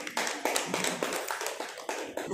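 Audience clapping: a burst of quick hand claps that starts suddenly and dies away near the end.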